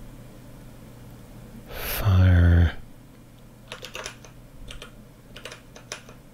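Scattered keystrokes on a computer keyboard, a few small clusters of clicks in the second half. About two seconds in comes a short, louder hummed vocal sound from the person typing.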